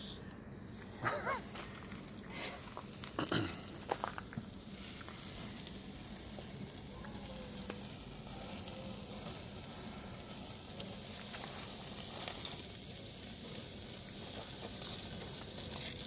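Slices of marinated deer heart sizzling on a charcoal grill grate: a steady hiss that sets in about five seconds in, once the pieces are laid on, after a few short knocks.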